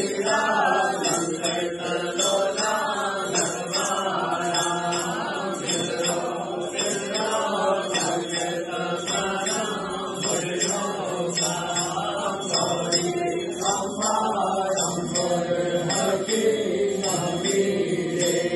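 A group of devotees chanting a Hindu aarti hymn together, a continuous sung chant without pauses.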